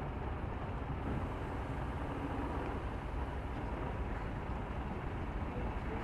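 Scania tanker truck's diesel engine running as the rig moves slowly past, heard as a steady, even low noise with outdoor background.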